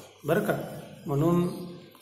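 Only speech: a man speaking in two short, drawn-out phrases with brief pauses between them.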